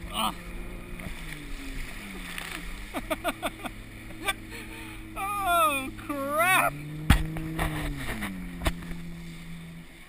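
Towing ski boat's engine droning steadily, its pitch dropping about two seconds in as it throttles back and climbing again near seven seconds as it speeds up. Water splashes against the tube, and a person yells with a wavering voice in the middle.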